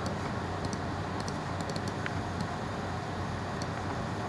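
Steady background hum and hiss with a scattered handful of faint, sharp computer clicks, from mouse or keyboard use.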